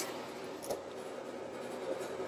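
Quiet, steady background hiss with one faint click about two-thirds of a second in.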